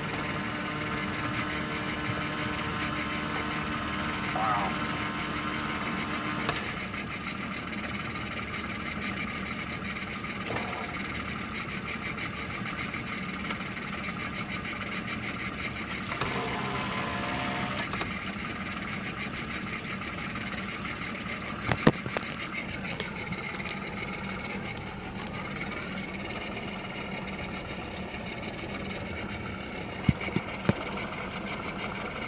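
A boat's motor running steadily under way, a constant hum whose tone shifts about six seconds in, with a few sharp clicks a little over two-thirds of the way through.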